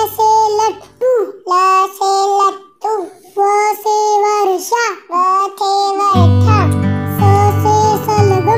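A child's voice singing a Hindi alphabet song over backing music, one held syllable after another. The low backing drops out after about a second and comes back about six seconds in.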